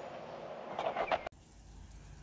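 Quiet outdoor background noise with no distinct event. About a second in it changes abruptly to a fainter background with a low rumble underneath.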